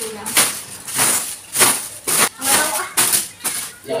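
Short stick broom (sapu lidi) sweeping over a mattress's cloth sheet: quick brushing strokes, about two to three a second.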